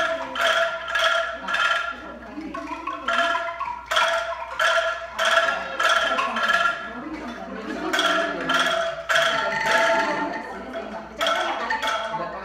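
A group playing a simple melody on pitched struck instruments: clear ringing notes, about two to three a second, changing pitch from note to note, with short breaks. Voices talk underneath during the breaks.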